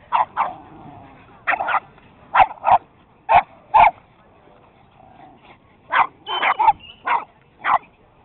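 Dogs play-barking while they wrestle: about a dozen short, sharp barks, mostly in quick pairs, with a pause of a couple of seconds midway and a quick run of barks near the end.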